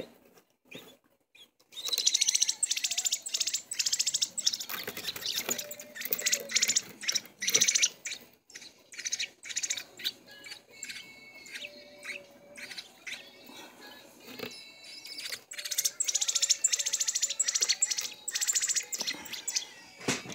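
Fledgling American robin giving rapid, high-pitched begging chirps in several loud bursts, quieter in between: the young bird begging to be fed.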